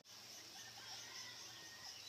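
Near silence: faint outdoor ambience.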